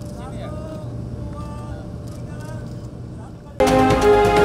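A steady low engine hum with faint voices in the background. Near the end, loud theme music starts abruptly.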